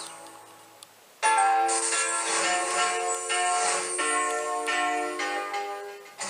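TV channel bumper jingle music. After a fading tail and about a second of quieter gap, bright music starts suddenly about a second in. It plays a run of held notes that change every half second or so, and drops away just before the end.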